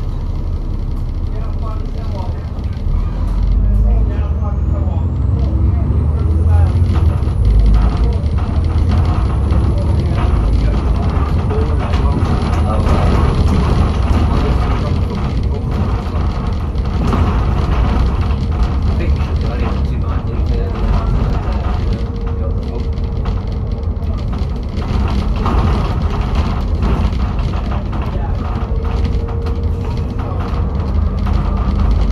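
Alexander Dennis Enviro400 double-decker bus heard from inside while it drives. The engine runs steadily and grows louder about four seconds in as it pulls away. Frequent small rattles and knocks come from the body, and a faint high whine climbs and holds for about ten seconds.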